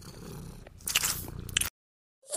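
A short run of chewing and crunching noises with several sharp crunches in the second half, cutting off suddenly just before the end.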